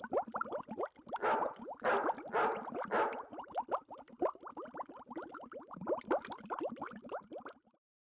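Bubbling water: a fast, dense run of short rising plops, louder between about one and three seconds in, stopping just before the end.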